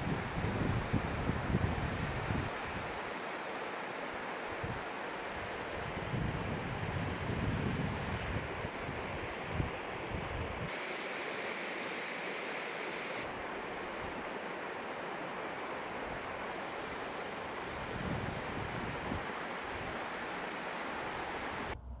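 A small mountain waterfall and rocky stream rushing steadily, with gusts of wind buffeting the microphone now and then.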